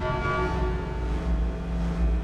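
Logo sting sound design: a deep low drone with a chord of held, ringing tones above it, the sustained tail of an opening hit.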